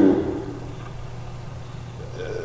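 A man's voice trails off, then a pause filled only by a steady low background hum.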